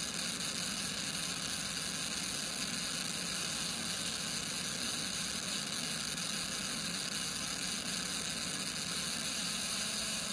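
Steady rushing hiss of wind and road noise from a police Dodge Charger Scat Pack travelling at high speed, loud enough to bury the radio traffic.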